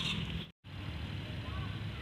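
Steady low outdoor background noise, cut to silence for a moment about half a second in, then resuming.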